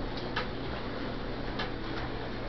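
Puppies' claws clicking on a hard tile floor: a few faint, irregularly spaced ticks over a steady low hum and hiss.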